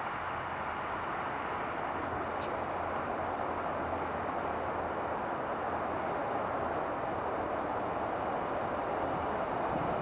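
Distant jet airliner engines running at power: a steady rushing noise that slowly grows louder.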